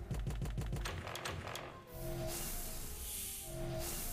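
Online video slot game sound: rapid, even ticking of the reels spinning for nearly two seconds. The reels then stop and a short melodic chime with a bright shimmer plays for a small win.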